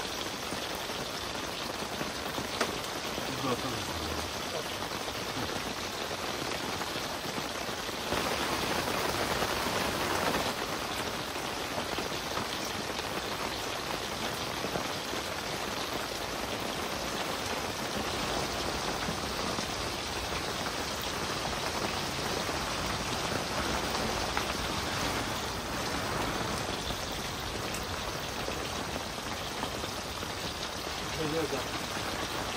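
Steady rain falling on the fabric of an inflatable tent, heard from inside, growing louder for a couple of seconds about eight seconds in.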